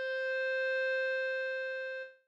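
B♭ clarinet holding the last long note of the melody: one steady tone that swells slightly and then fades out near the end.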